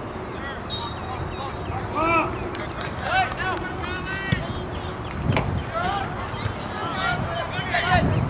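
Scattered shouts and calls from players and spectators across an outdoor soccer field, over steady outdoor background noise. A single sharp knock comes a little after four seconds in.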